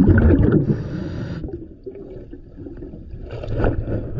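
Underwater breathing of a diver on a regulator: a burst of bubbling exhaust at the start, then a short hiss of a breath drawn in about a second in. Rough bubbling starts building again near the end.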